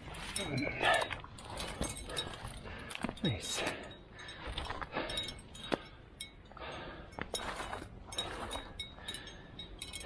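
Metal climbing gear on a harness rack, carabiners and cams, clinking in many short sharp clicks as the lead climber clips into the belay anchor. The climber's breathing and a couple of short falling grunts come through between the clinks.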